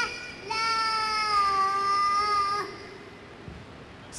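A three-year-old boy's high voice in a played-back recording, finishing his count to ten: a short word, then one long drawn-out word lasting about two seconds.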